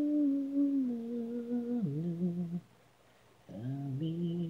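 A single voice humming a slow melody unaccompanied, in long held notes that step down in pitch about two seconds in. It breaks off for about a second, then comes back on a low note near the end.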